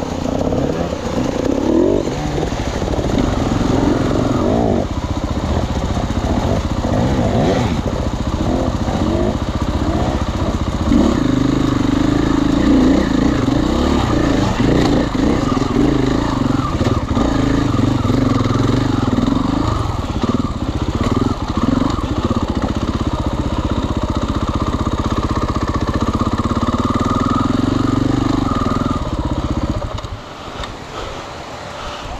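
Husqvarna enduro dirt bike engine heard from the bike itself, pulling on and off the throttle over rough ground, with long stretches of steady pull. The engine note drops away sharply near the end as the bike slows.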